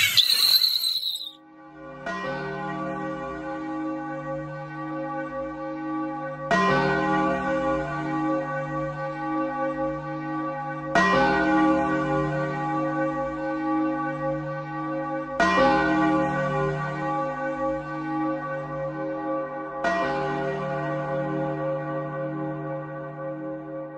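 A brief hit at the very start, then a bell tolling slowly, struck five times about four and a half seconds apart, each stroke ringing on until the next.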